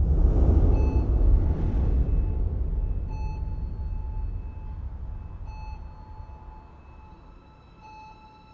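A deep low rumble swells up and slowly dies away over several seconds. Over it a short electronic beep sounds three times, about two and a half seconds apart.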